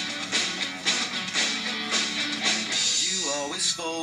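A Sonor drum kit played in a steady rock beat, drum and cymbal hits about twice a second, along with a guitar-led backing track. Near the end come sliding, wavering pitched notes.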